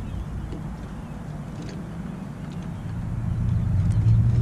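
Low outdoor rumble that dips in the middle and grows louder near the end, where a steady low hum comes in.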